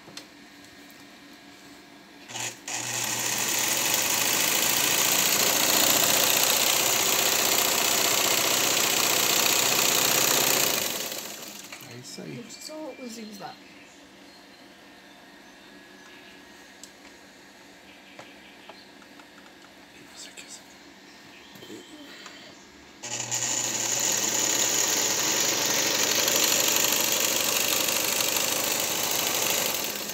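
Vigorelli Robot electric sewing machine, with an all-iron mechanism, stitching at a steady speed in two runs of about eight seconds each, with a quieter pause between them.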